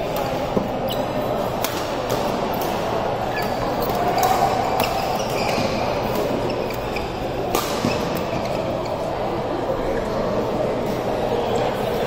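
Badminton rackets striking a shuttlecock in a doubles rally, a string of sharp cracks at irregular intervals with the loudest hit about seven and a half seconds in. Beneath it is the steady background noise of a large sports hall where other courts are in play.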